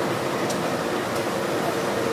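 Slow-moving railway coaches rolling along the track while being shunted: a steady, even rolling noise with two short clicks from the wheels and couplings, about half a second and just over a second in.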